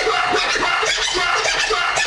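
Vinyl records being scratched by hand on turntables, many quick back-and-forth strokes over continuous music.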